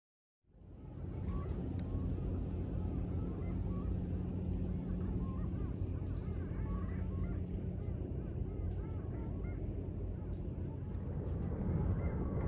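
Flock of geese honking in the distance, many short calls overlapping, over a steady low hum.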